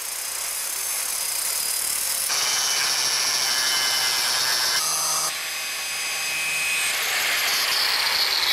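Milwaukee 12-amp mini angle grinder cutting and grinding metal: a continuous harsh, hissing grind of the disc against the metal. It changes abruptly in tone a few times, about two and five seconds in.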